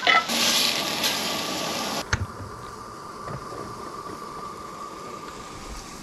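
Hamburger patties and onions sizzling on a hot griddle, a steady loud hiss that cuts off about two seconds in. After it comes a quieter stretch with a faint steady high tone.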